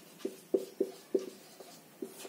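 Marker pen writing on a whiteboard: five or six short, separate strokes as a word is written.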